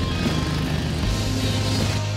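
Background rock music with steady sustained bass notes, starting abruptly.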